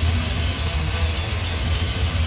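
Death metal band playing live: heavily distorted guitars over dense, fast kick drums, with cymbal hits on top.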